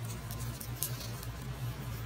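Crisp fried samosa pastry crackling in a few faint snaps as hands tear it open, over a steady low hum.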